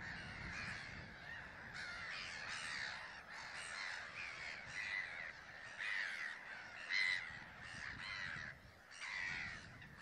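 A flock of gulls calling together: many harsh, overlapping calls with hardly a break, one louder call about seven seconds in.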